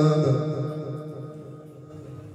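A man's melodic Quran recitation into a microphone, holding the long final note of a verse, which fades away over the first second into a quiet pause before the next verse.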